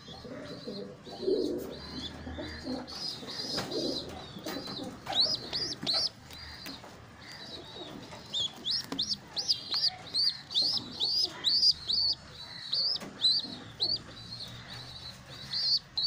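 High-pitched squeaking peeps from a baby pigeon (squab), in quick runs of short rising-and-falling notes that come thickest in the second half, about two or three a second.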